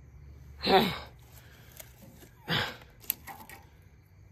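A person's voice making two short breathy, wordless vocal sounds, the first under a second in and the second about two and a half seconds in, each falling in pitch. A few faint clicks follow over a low steady hum.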